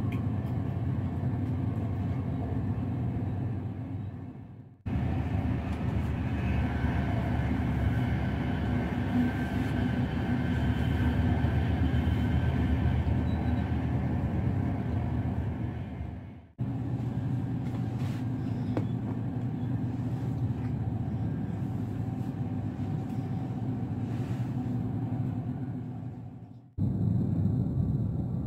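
Electric intercity train running along the track, heard from inside the carriage as a steady rumble of wheels and running noise, with a faint high whine in the middle stretch. The sound fades out and cuts back in three times, about five seconds in, past the middle and near the end.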